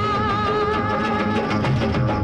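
A Hindi film song played at the close of a radio programme: a long held note with a slight waver for the first second and a half, over a steady instrumental accompaniment.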